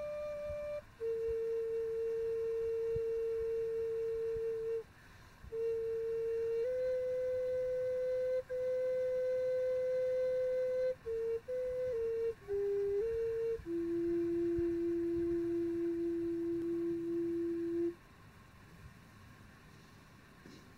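Native American flute playing a slow melody of long held notes with short stepping notes between them, ending on a long low note that stops about two seconds before the end.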